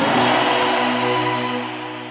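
Logo-reveal sound effect: a noisy whooshing swell over a held musical chord, loudest early and then slowly fading away.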